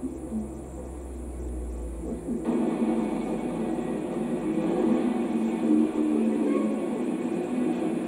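Television playing a videotape's soundtrack: a low hum, then about two and a half seconds in the tape's sound cuts in suddenly and runs on, louder and fuller.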